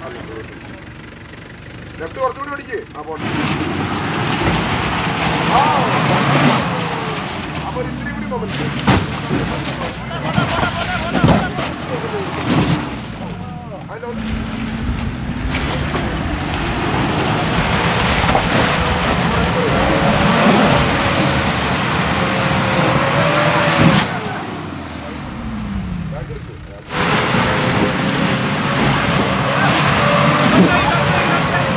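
Mitsubishi Pajero engine revving up and down under load as the 4x4 climbs through deep mud, with the pitch rising and falling several times. Voices of onlookers are heard.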